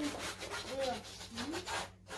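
Pencil scratching on a stretched canvas in quick, rapid back-and-forth strokes while an outline is sketched.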